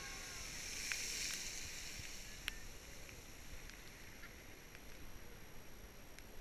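Strokkur geyser erupting: a rushing hiss of water and steam that swells to its loudest about a second in, then fades as the spray falls back. A few sharp clicks sound over it.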